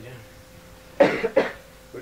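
A person coughing twice in quick succession, two sharp coughs about a second in.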